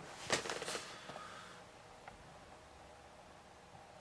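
Near silence: quiet room tone, with a few faint clicks in the first second.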